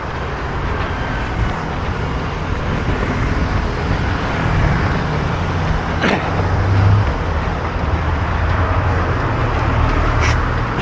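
Road traffic on a busy city road, cars and motor scooters passing close by, a steady rumble of engines and tyres. A brief sharp high sound cuts through about six seconds in.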